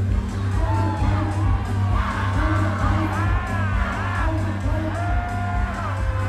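Loud dance music with a heavy, steady bass, and a crowd whooping and cheering over it, most strongly between about two and four and a half seconds in.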